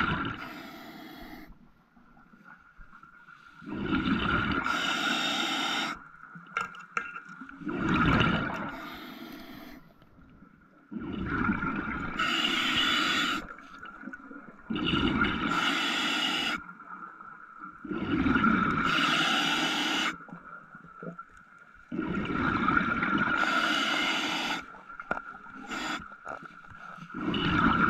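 A scuba diver breathing through a regulator underwater: loud bubbling exhalations alternating with quieter inhalations, about one breath every four seconds, over a steady faint high tone.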